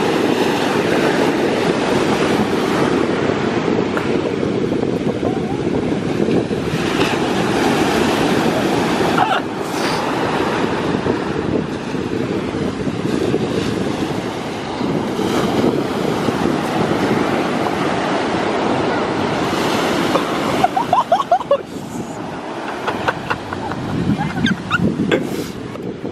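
Ocean surf breaking and washing up the beach: a steady rush of waves mixed with wind buffeting the microphone.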